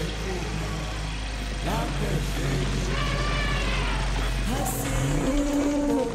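Steady low rumble of a vehicle engine, with short voice-like calls rising and falling over it. The rumble breaks up about five seconds in as held musical tones come in.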